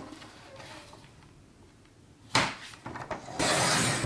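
Paper trimmer's sliding blade drawn along its rail, cutting through cardstock: a sharp knock a little past halfway, then the steady scraping slide of the blade near the end.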